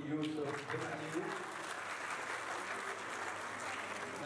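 Audience applauding steadily, with a voice over the clapping for about the first second.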